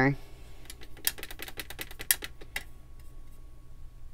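A watercolour brush mixing paint in the plastic mixing tray of a Rosa Gallery paint tin: a quick run of light clicks and taps that stops about two and a half seconds in.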